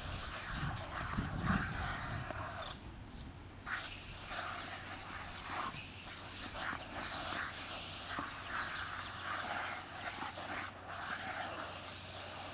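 A German Shepherd snapping and biting at a lawn sprinkler's water spray, making dog noises over the steady hiss of the spray. The spray hiss drops out for about a second around three seconds in.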